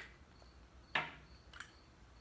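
A sharp click about halfway through and a fainter tick just after, from a small metal lawn-mower carburetor and its float bowl being handled, over low room tone.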